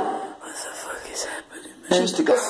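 Soft, hushed speech at a low level, close to a whisper; a louder voice comes in near the end.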